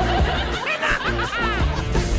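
Background music with a steady bass beat, with laughter over it.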